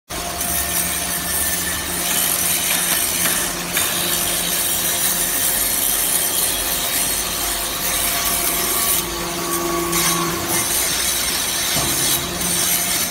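Hydraulic metal-chip briquetting press running: a steady low motor and pump hum under a continuous rasping hiss of machinery. The hiss grows brighter for a moment about nine seconds in.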